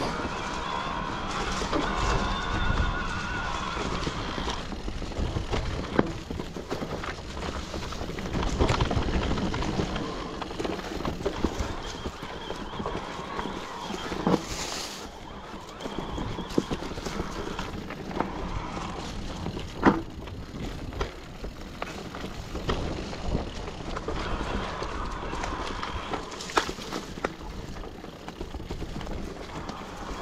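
Irregular knocking and rattling over a steady rumble, as of moving along a rough trail, with a sharper single knock about two-thirds of the way through.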